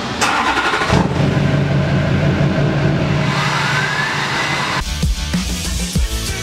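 2005 Chevrolet Duramax LLY 6.6-litre V8 turbo diesel running, with a turbo whistle rising in pitch a little over three seconds in. Music comes back in near the end.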